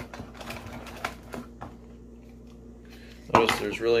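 Small clicks, taps and rustles of a cardboard box and wrapped power adapters being handled and lifted out, a few in the first second and a half, then a man starts speaking near the end.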